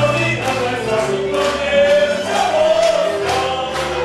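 A group of voices singing a folk song together over instrumental accompaniment, with a regular beat.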